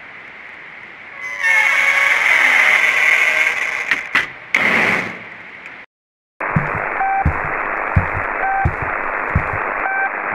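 Faint static that swells about a second in to a loud, harsh rush of noise, cuts to silence for about half a second near the middle, then comes back as radio-like static with a short beep about every second and a half.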